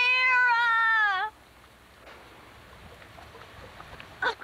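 A child's single drawn-out, high-pitched vocal cry, just over a second long, dipping in pitch at the end.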